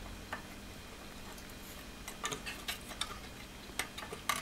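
A few faint, sharp clicks and ticks: small metal handling noises as a resistor lead on an amplifier's metal chassis is worked at and tugged in an effort to free it from its terminal. They come bunched about two seconds in and again near the end.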